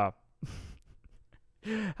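A man's short, breathy exhale like a sigh, about half a second in, fading out within half a second.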